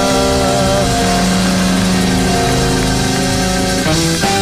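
Live church band music: held keyboard chords that change every second or two over a steady drum rhythm, played loud.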